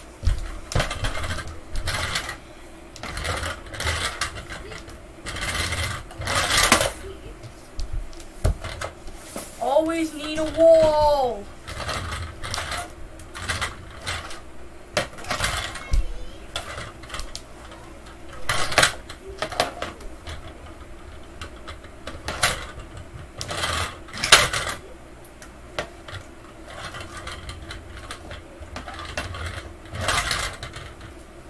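Metal 1:24-scale diecast model cars handled and set down on a wooden floor: scattered light clacks and knocks, irregularly spaced.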